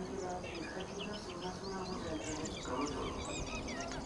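Many small birds chirping in quick, overlapping high calls, over the low murmur of distant voices.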